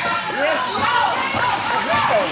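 Basketball game in a gym: spectators' voices calling and chattering over the ball bouncing on the court.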